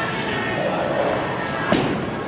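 Bowling alley din: a steady wash of background noise and distant chatter, with one sharp knock near the end.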